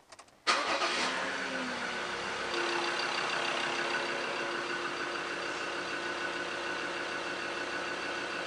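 Mazda BT-50's 3.2-litre five-cylinder diesel engine started about half a second in: a brief crank on the starter, then it catches and settles into a steady idle. The battery and starter test rates the start as good.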